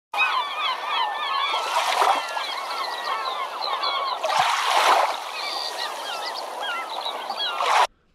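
A flock of birds calling over one another, many short overlapping calls, with two louder surges of splashing water about two seconds in and again around the middle. The sound starts and cuts off abruptly.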